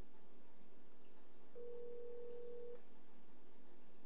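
Ringback tone from the Avaya Communicator softphone as an outgoing call rings an unanswered extension: one steady tone about a second long, starting about a second and a half in.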